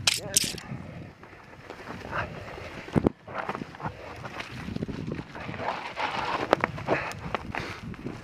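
Mountain bike rolling down a rough dirt trail: tyre and frame noise with rattles and clicks over the bumps, and one hard knock about three seconds in.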